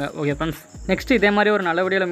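Speech only: a voice talking on, with a short pause about half a second in. A faint steady high-pitched whine sits under it.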